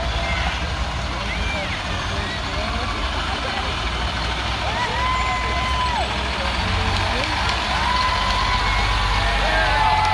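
Diesel school buses driving slowly past in a line, their engines a steady low rumble. Voices carry over them, with a few long held calls about five and eight seconds in.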